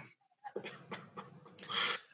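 A person's soft breathing: faint, uneven breaths, then a louder breath near the end.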